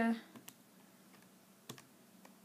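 Keys of a Texas Instruments TI-83 Plus graphing calculator being pressed: two short separate clicks about a second apart.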